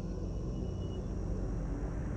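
A steady low rumble with a faint hiss above it, unchanging throughout.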